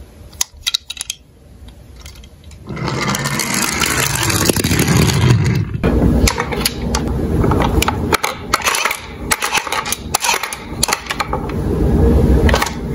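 A few light clicks, then from about three seconds in a loud rattling clatter of plastic toy cars and trucks being rummaged through in a cardboard box, with many sharp knocks of plastic on plastic.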